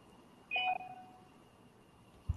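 A short electronic notification chime from video-call software about half a second in, a single pitched ding that rings out over about half a second, over faint room noise.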